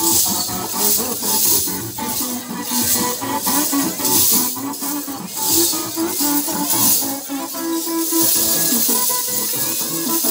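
Lezim, wooden-handled dance rattles strung with small metal discs, jingling in repeated clashes as a group of dancers swings them together, over a recorded song with melody playing loudly.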